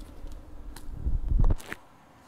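Plastic multi pens being handled and set down on a notebook page: a few light clicks and a low rumble of handling, loudest about a second and a half in.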